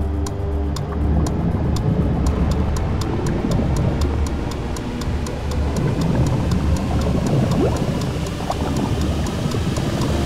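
Tense background score: a clock-like ticking about three to four times a second over a low drone, with a dense rushing layer that swells in about a second in.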